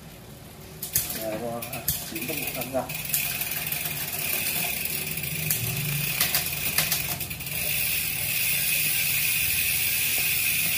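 Mountain bike chain and drivetrain whirring as the crank is turned by hand, with a few clicks along the way. It gets louder in the last couple of seconds.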